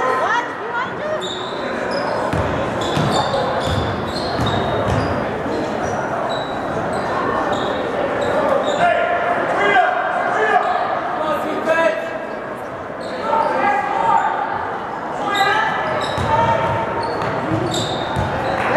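Basketball game in a gymnasium: a ball dribbled on the hardwood floor, sneakers squeaking in short high chirps, and voices of players and spectators calling out, echoing in the large hall.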